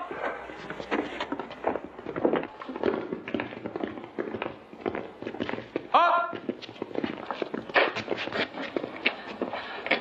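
Footsteps of a group of men walking on a stone floor: many irregular, overlapping steps, with a brief voice about six seconds in.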